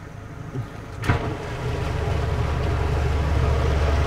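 A motorboat's engine picks up speed after a knock about a second in: a low drone that grows steadily louder.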